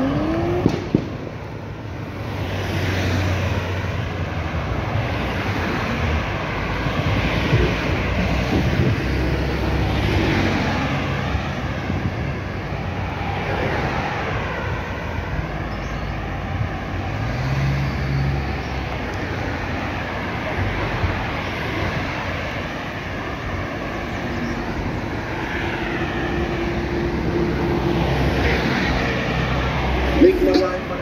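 Road traffic on a highway: cars passing close by one after another, each swelling and fading as it goes by, with engine hum and tyre noise. A brief sharp knock about a second in.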